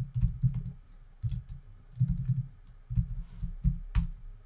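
Typing on a computer keyboard in short bursts of rapid keystrokes, with brief pauses between the bursts.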